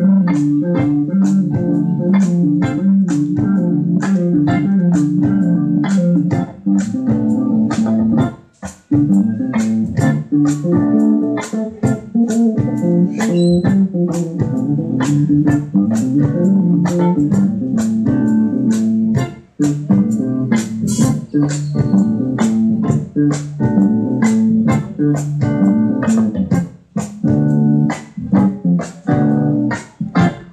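Live band of electric guitar, bass guitar and drum kit playing an instrumental passage with a steady drum beat, with brief breaks about eight and nineteen seconds in.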